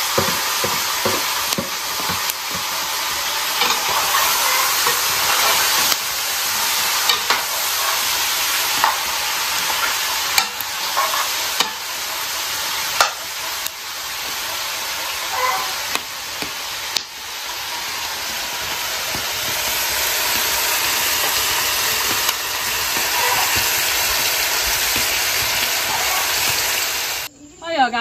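Chicken pieces frying in an aluminium pot, a steady sizzle, with a metal spoon scraping and clicking against the pot now and then as they are stirred. The sizzle cuts off suddenly near the end.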